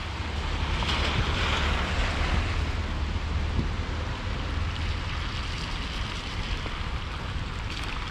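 Traffic on a wet, slushy road: car tyres hiss on the wet surface as they pass, swelling about a second in, over a steady low rumble of wind on the microphone.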